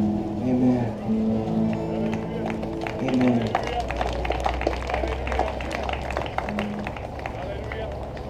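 Live worship band music tailing off at the end of a song. Held keyboard and guitar chords fill the first few seconds, then a low sustained note sounds under light clicks and taps.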